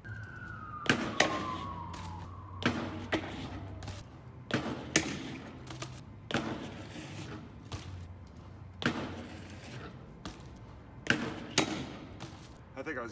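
BMX bike knocking against a concrete ledge and the pavement: a series of about a dozen sharp knocks and thuds, several in close pairs, as the bike is hopped onto the ledge and dropped off it.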